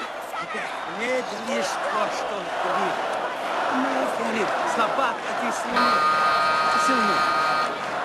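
An arena crowd shouting and chanting, many voices overlapping. About six seconds in, a steady ringing tone sounds over it for about two seconds.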